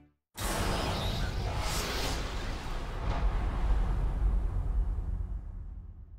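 End-card sound effect: a whoosh with a deep low rumble starts suddenly, holds steady, then fades out over the last second or so.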